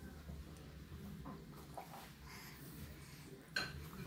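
Faint, scattered clinks and knocks of tableware on a wooden table, with a sharper click near the end.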